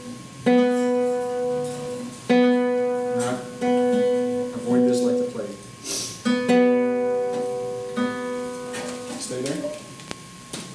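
Classical guitar: single notes plucked one at a time, all at the same pitch. There are about five strokes a second or two apart, and each rings on until the next.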